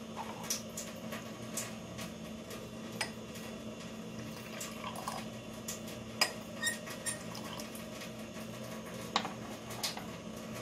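Glass tumblers clinking and knocking lightly on a stone countertop while tea is poured from one glass into another, a few scattered clinks over a steady low hum.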